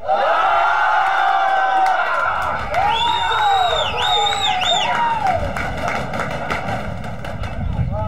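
Several voices shouting and cheering at once from spectators and players at a football match, starting loud all at once, with high-pitched yells in the middle.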